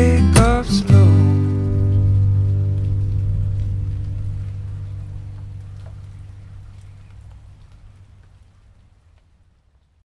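Music: the closing acoustic-guitar chord of a song, struck after a few sliding notes about a second in, rings out and fades slowly away to near silence over about eight seconds.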